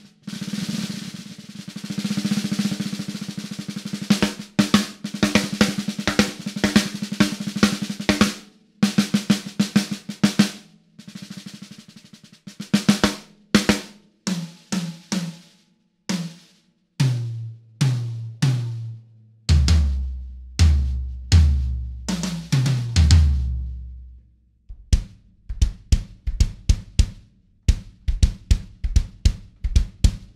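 DW acoustic drum kit played drum by drum to check the mics: snare rolls and single snare strokes, the snare damped with Moongel pads, then tom hits stepping down in pitch to the floor toms about two-thirds of the way in, then quicker, lighter strokes near the end.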